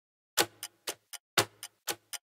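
Ticking-clock sound effect used as a countdown timer for guessing the song, starting about half a second in: about four ticks a second, one louder tick each second.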